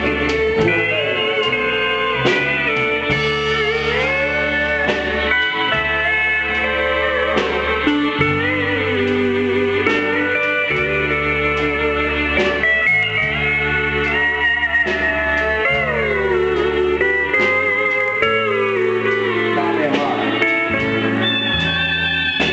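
Country band's instrumental break led by an Emmons pedal steel guitar, its notes sliding and bending, over electric bass and drums.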